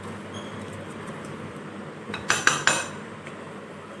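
A spoon stirring puffed rice in a glass bowl, with a quick run of about four or five clinks of the spoon against the glass a little past halfway.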